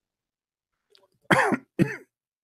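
A person coughing twice, two short coughs about half a second apart, starting after a second of silence.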